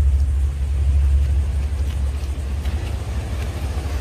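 Wind buffeting the camera microphone: a steady low rumble that wavers in strength.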